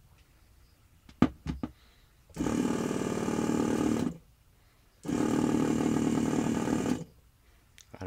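A few clicks, then a homemade tattoo machine buzzing in two bursts of about two seconds each, switched on and off with a homemade horseshoe foot pedal.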